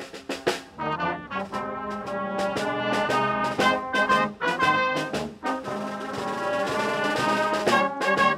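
Brass band of trombones and tubas playing a tune with a drum kit keeping the beat, the music cutting in suddenly at the start.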